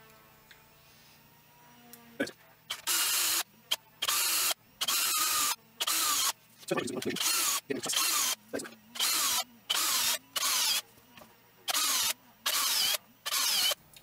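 Electric drill run in short trigger bursts, about ten in a row roughly a second apart, each with a whine that rises and falls, as a 2.5 mm bit drills tapping holes for M3 screws through a plastic FEP frame into a wooden block beneath.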